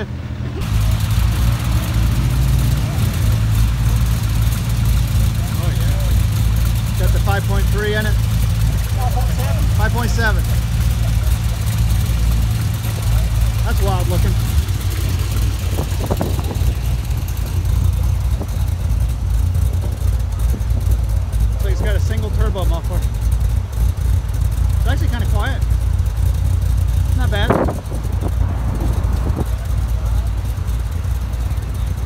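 Engine of an open tube-frame sports car idling steadily with a low, loud note, with people talking over it.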